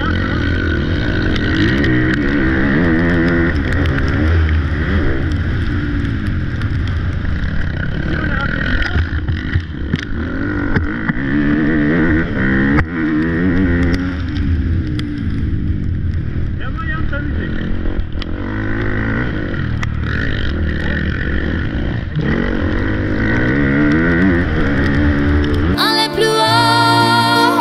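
Motocross bike engine, heard close up from the rider's helmet, revving up and dropping back again and again as the rider accelerates, shifts and rolls off around the track.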